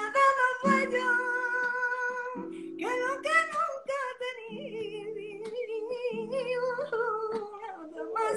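A woman singing a slow ballad in long, held notes with vibrato over guitar chords that are struck about every second and a half.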